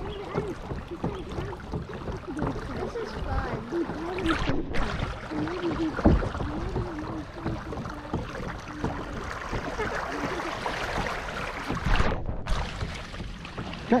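Water washing along the hull of a small boat moving slowly across a lake, a steady wash with a low irregular rumble, and faint voices underneath.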